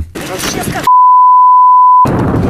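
A broadcast censor bleep: a loud, steady 1 kHz tone starting about a second in and lasting about a second, replacing a word of speech. Before it, rough on-location field sound with a voice.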